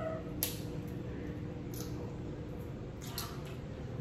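Crab shells being cracked and picked apart by hand at the table, giving a few sharp snaps (one about half a second in, more around the second and third seconds) among soft wet eating sounds, over a steady low hum.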